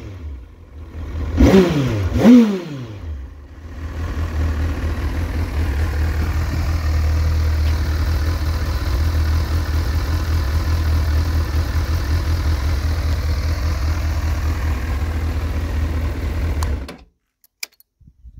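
Honda CBF1000's inline-four engine blipped twice with the throttle, each rev rising and falling quickly. It then settles into a steady idle, which stops suddenly about a second before the end.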